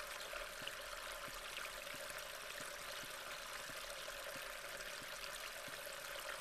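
Faint, steady rushing of water with small scattered ticks, an unbroken background bed.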